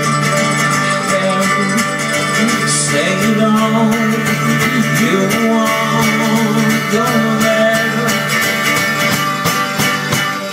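Live acoustic folk band playing: acoustic guitar and mandolin strummed over upright bass in a steady rhythm.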